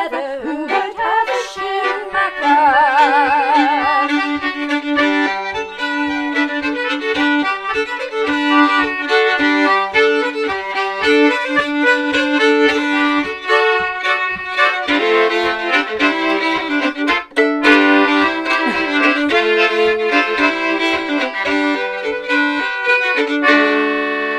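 Concertina and fiddle playing a traditional Northumbrian tune together, the fiddle holding a long note with vibrato about two to four seconds in. A soft, regular tapping keeps time at about two beats a second.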